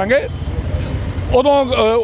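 A man's voice in the open street, with a short pause in the middle, over a steady low rumble of street traffic.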